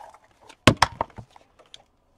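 A quick run of sharp clicks and knocks, about four in half a second, as a yellow plastic craft punch is picked up off a cluttered craft table.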